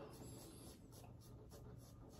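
Faint scraping of a safety razor cutting stubble on the chin, a series of short strokes.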